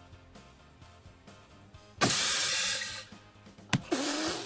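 Potato cannon going off: a sudden loud hissing blast about halfway through that lasts about a second and then dies away, over faint music. A sharp click follows near the end.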